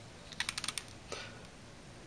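A quick run of about six light clicks and taps, under a second long, from fingers handling and turning a small plastic action figure.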